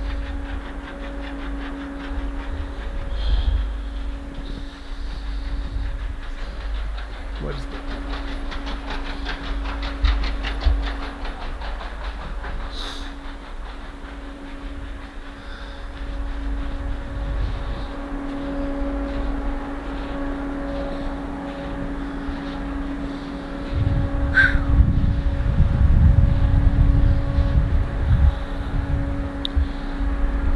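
Wind noise rumbling on the microphone, with a steady low hum and rustling handling noise; the rumble grows louder for the last several seconds.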